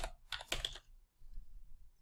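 Typing on a computer keyboard: a few quick key clicks in the first second, then fainter ones.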